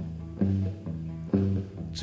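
Live blues band playing, with chords struck on the guitar about once a second over bass, each chord ringing and fading before the next.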